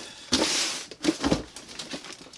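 Brown paper wrapping rustling and crinkling as a package is handled, in a few bursts, with a soft knock just past a second in.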